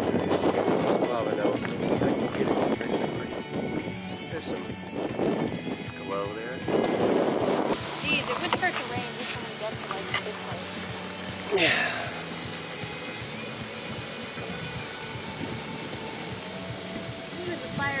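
Indistinct voices over background music, dropping abruptly about eight seconds in to a quieter, even stretch.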